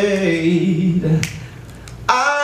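A man singing unaccompanied into a microphone, holding a wavering sung note that stops a little past a second in. Two sharp clicks follow in the quieter second half.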